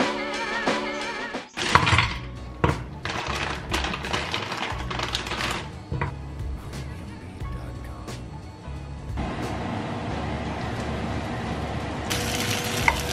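Background music over sliced frozen potatoes tipped from a plastic bag into a frying pan, landing as a run of sharp knocks. From about nine seconds in, a steady sizzle as the potatoes fry.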